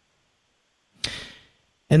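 A man's short, sharp intake of breath about a second in, a brief hiss that fades within half a second, taken just before he starts to speak. Near silence before it.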